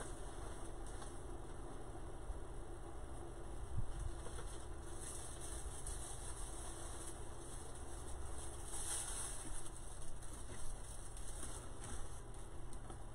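Steady low background hum with faint intermittent rustling and one soft thump about four seconds in.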